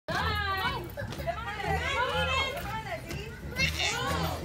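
Young children's voices chattering and calling out, over a low, regularly pulsing bass from background music.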